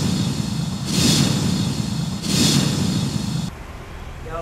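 Logo-intro sound effect: three rushing, rumbling swells, each about a second long, that stop about three and a half seconds in.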